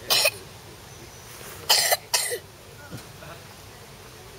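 Three short, sharp coughs: one at the very start, then two close together a little under two seconds later.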